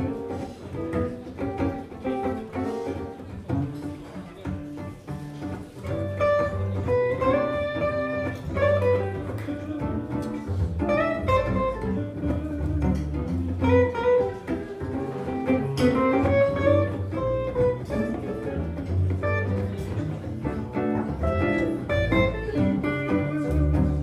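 A jazz trio of two electric guitars, one a hollow-body archtop, and a plucked double bass playing a swinging tune. The guitars trade melodic lines over the bass, and the playing gets fuller about six seconds in.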